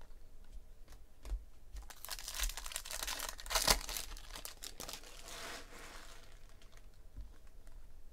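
Foil wrapper of a baseball card pack being torn open and crinkled: a burst of rustling from about two seconds in until about six, loudest near the middle. Light clicks of cards being flicked through come before and after it.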